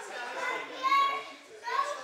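Young children's voices: high-pitched calls and chatter, the loudest about a second in.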